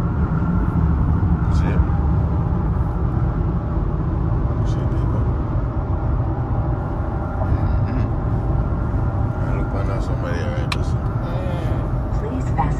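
Steady low road and engine rumble heard inside the cabin of a car driving at highway speed.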